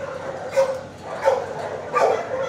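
A dog barking twice, once about half a second in and again just past the one-second mark.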